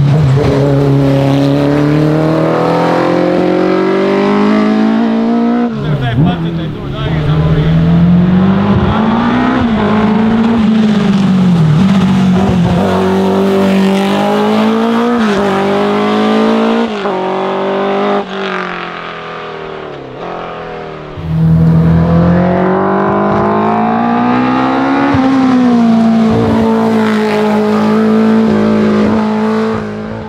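DAREN MK3 Cosworth sports prototype running flat out up a hill climb, its engine revving hard and rising in pitch through each gear. The pitch falls sharply at each upshift or lift for a corner, and the engine goes quieter for a few seconds near two-thirds of the way in before coming back on full throttle.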